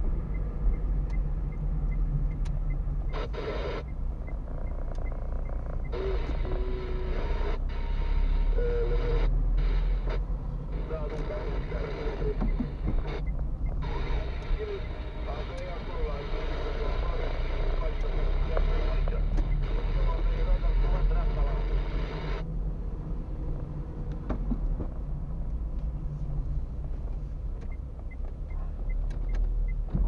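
Car interior noise while driving: a steady low engine and road rumble heard from inside the cabin, with a turn indicator ticking evenly near the start and again near the end.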